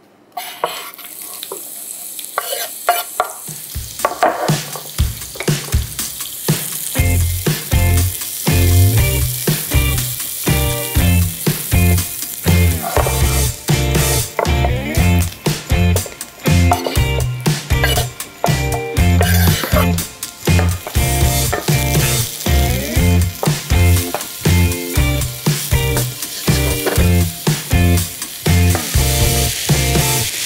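Chopped onion and mushrooms sizzling in hot olive oil in a steel frying pan as they are stirred. Background music with a steady beat comes in about four seconds in.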